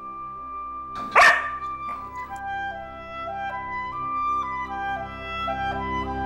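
A dog, a young pit bull–border collie mix, gives one short, loud bark about a second in, with a fainter sound just under a second later. Orchestral background music with held flute and string notes plays underneath.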